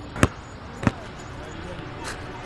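A basketball bounced twice on an asphalt court: two sharp bounces about 0.6 s apart.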